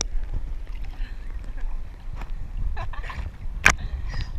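Sea water sloshing and splashing against a camera at the waterline as it rises out of the water, over a low steady rumble, with one sharp splash shortly before the end.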